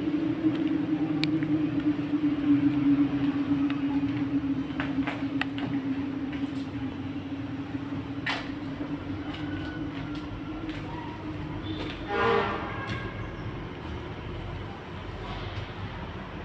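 A steady low drone with a faint hiss beneath it, slowly fading out over about ten seconds. Scattered light clicks run through it, and a brief pitched sound comes about twelve seconds in.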